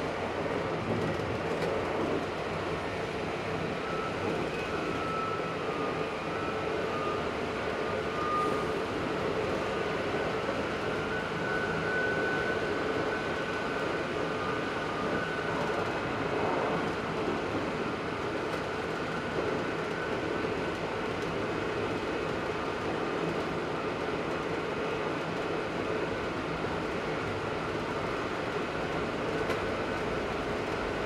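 Narrow-gauge diesel railcar heard from inside the driver's cab while under way: a steady running noise of engine and wheels on the rails, with faint high whining tones that come and go in the first half.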